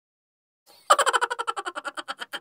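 Short logo sound effect: a loud, rapid stuttering train of pulses, about a dozen a second, starting about a second in and fading away.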